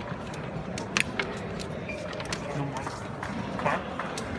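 Indistinct murmur of voices in a sports hall, with a sharp double click about a second in as a table-football playing figure is flicked into the ball.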